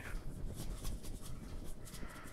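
Garlic powder being shaken from a spice shaker over a bowl of stuffing: a run of faint, quick, irregular scratchy ticks.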